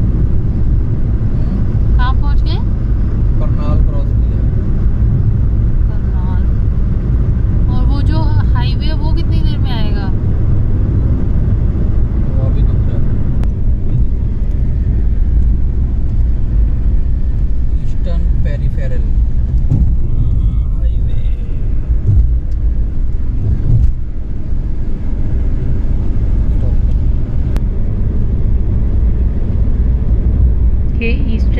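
Steady low rumble of engine and tyre noise heard inside a car cruising on a highway, with brief snatches of quiet talk.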